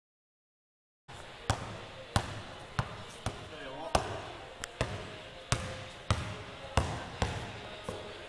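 Basketball being dribbled, a steady run of sharp bounces about one and a half to two a second, starting about a second in.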